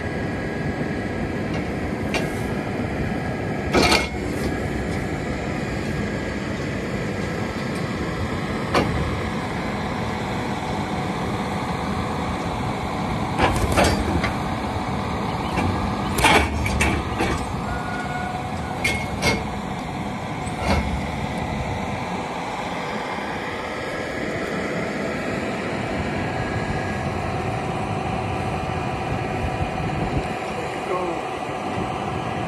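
John Deere tractor running steadily while it works a round-bale processor that shreds hay, with several sharp metal clanks from the machinery, loudest about 4 s in and again around 13 to 17 s.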